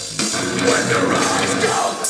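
A metalcore band playing live with distorted guitars and drums. The music dips briefly at the very start and comes straight back in at full volume.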